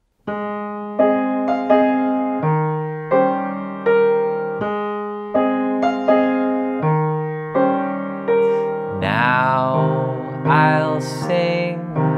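Grand piano played slowly in a low register, chords struck about every 0.7 s at a steady half tempo. About nine seconds in, a man's voice joins, singing slowly over the piano.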